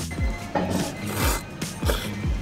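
A person slurping thick abura soba noodles from chopsticks, two short noisy slurps about a second apart, over background music with a steady beat.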